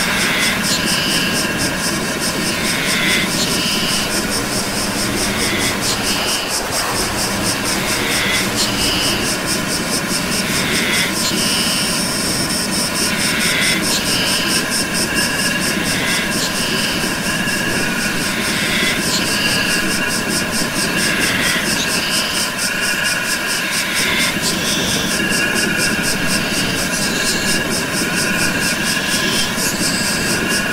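Experimental electronic hardcore track: a dense, steady wall of noise like jet roar, with short blips recurring about once a second and fast fine ticking high up.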